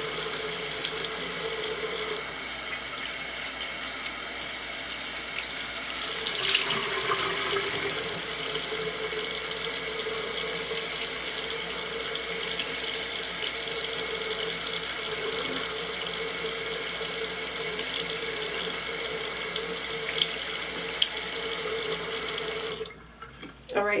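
Bathroom sink tap running steadily, water pouring into the basin while a face is rinsed with a washcloth. The tap is shut off abruptly near the end.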